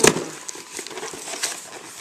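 Cardboard shipping box being handled and cut open: a sharp knock at the start, then scattered small clicks and scratching at the box and its tape.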